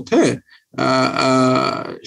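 A man's voice: a short "hyan" (yes), then after a brief gap a drawn-out hesitation sound, one vowel held at a steady pitch for about a second.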